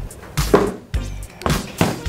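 A few dull knocks and thumps from handling a cardboard box and the handheld vacuum cleaner as the box is pushed aside, over quiet background music.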